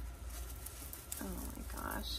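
Light rustling and faint clicking of a small cotton purse covered in sewn-on shell beads being handled and lifted. About a second in, a woman says 'oh'.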